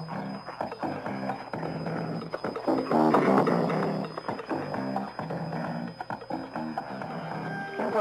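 Instrumental music received over shortwave radio: a short station theme opening the sports report, with a rhythmic, repeated bass line.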